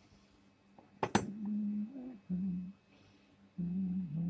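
A sharp metal clank about a second in, then a person humming a few short low notes, the pitch stepping between them.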